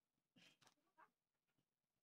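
Near silence: quiet room tone, with two or three faint, brief sounds about half a second and one second in.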